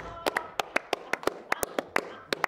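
A small group of people clapping: a handful of sharp, separate hand claps, about six or seven a second, with no crowd roar behind them.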